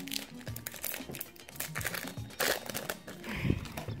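Foil wrapper of a Pokémon Breakthrough booster pack crinkling and crackling as it is handled and opened by hand, in irregular rustles that are loudest about two and a half seconds in and again near the end.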